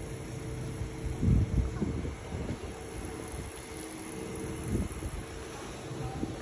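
Gusts of wind buffeting the phone's microphone ahead of an approaching rainstorm, strongest a little over a second in, over a steady low hum and hiss of the street.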